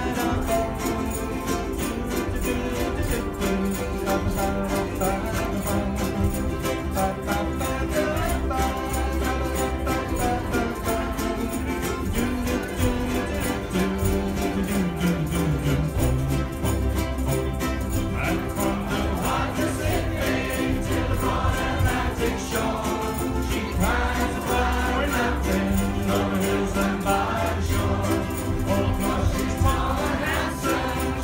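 A large ukulele ensemble strumming together in a steady, even rhythm, with many voices singing along.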